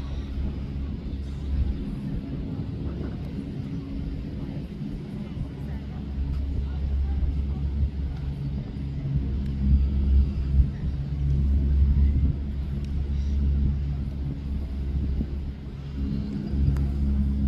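Gondola lift running: a steady low rumble with a faint machine hum from the moving cable and cabins, swelling somewhat in the second half.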